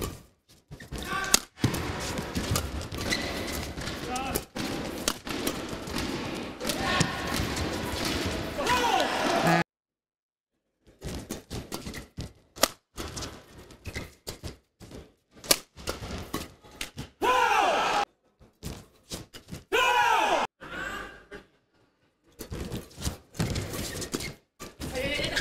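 Badminton rackets striking a shuttlecock in fast doubles rallies: sharp hits echoing in a large arena over crowd noise. There are loud crowd shouts and cheers after points, about two-thirds and near five-sixths of the way through, and the sound cuts out briefly about ten seconds in.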